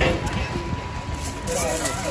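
A small child's faint wordless voice, gliding up and down about one and a half seconds in, over a steady low rumble.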